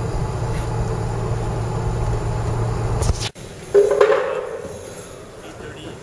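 Steady low road and engine rumble inside a moving car's cabin, cut off suddenly about three seconds in. A short loud sound follows, then the quieter background of a large indoor hall.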